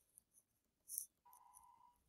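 Faint computer keyboard typing: scattered soft key clicks, one a little louder about a second in. A short steady tone sounds for under a second just past halfway.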